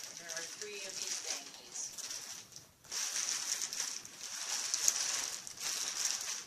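Clear plastic bubble wrap crinkling and crackling as it is handled and pulled from a cardboard box, with a brief lull about two and a half seconds in.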